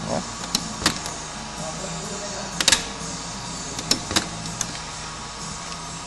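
Clicks and clacks of a 1985 Volkswagen Fusca's (Beetle's) door latch and push-button handle as the door is worked, the loudest a sharp double click about two and a half seconds in. A steady low hum runs underneath.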